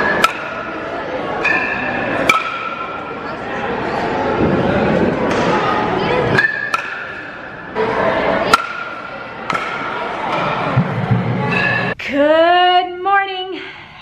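Bat hitting pitched baseballs in an indoor batting cage: about four sharp cracks, a couple of seconds apart, some followed by a short metallic ping, over a murmur of voices in a large hall. Near the end the sound cuts to a woman's voice.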